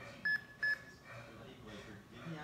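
Two short, high electronic beeps, about half a second apart.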